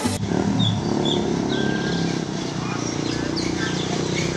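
Bus engines idling with a steady low rumble, with birds chirping now and then.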